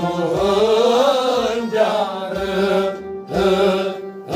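Kashmiri Sufi song: a man singing a long, slowly rising and falling melodic line, accompanied by a bowed fiddle and a low drum beat about once a second.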